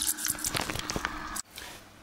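A clogged, fine-pore aquarium filter sponge is squeezed and rinsed by hand in a bowl of water, giving wet squelching and dripping. It stops suddenly about two-thirds of the way through, and a quiet stretch follows.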